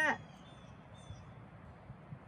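Quiet outdoor background with a faint low rumble of a light breeze on the microphone.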